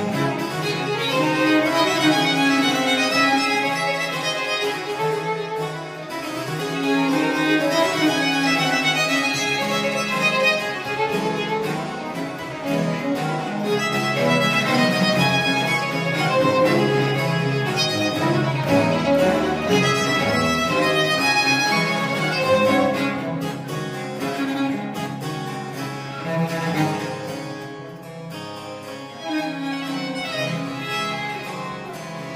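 Baroque trio of violin, viola da gamba and harpsichord playing in ensemble. The violin plays melodic variations over a three-note bass figure that repeats without a break, imitating the ringing of church bells.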